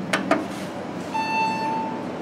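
Elevator hall call button pressed with two quick clicks, then a steady electronic beep starting about a second in, typical of a call-button acknowledgement tone on modernized elevator fixtures.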